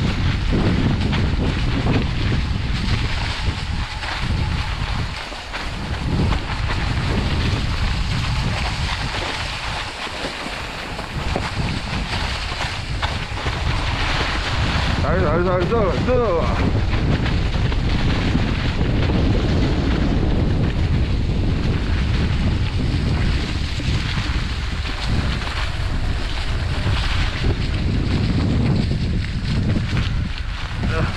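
Wind buffeting the microphone over the steady noise of mountain bike tyres rolling on a dry, leaf-covered dirt trail. About halfway through, a brief wavering tone sounds over it for a couple of seconds.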